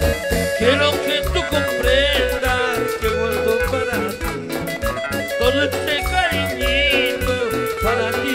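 A band playing an upbeat Latin dance song with a steady beat, bass and a wavering lead melody line.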